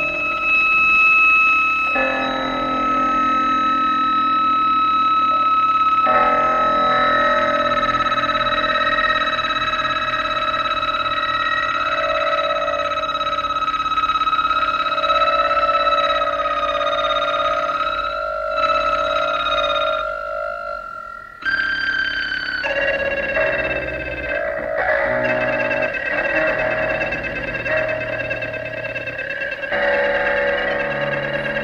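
Live electronic music: layered, sustained synthesizer tones that drift slightly in pitch and change in sudden blocks. Near the middle the sound thins and cuts out briefly about twenty-one seconds in, then a new cluster of tones comes straight back in.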